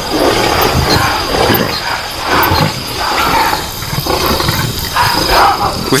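Lionesses growling and snarling in a string of harsh bursts, about one a second: squabbling at a small kill.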